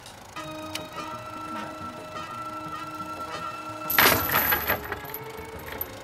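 Suspense soundtrack music: a steady held chord of several tones, cut by a sudden loud noisy hit about four seconds in, then a lower held tone.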